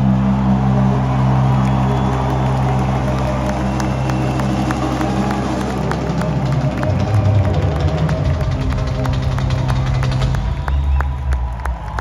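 Live rock band holding a long, loud chord on electric guitars and bass under repeated drum and cymbal hits, the drawn-out finish of a song in an arena. The held chord cuts off about ten seconds in, and crowd cheering carries on after it.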